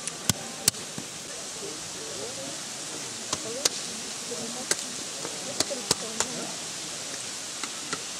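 Shallow stream water rushing steadily around rocks, with a few sharp clicks scattered through.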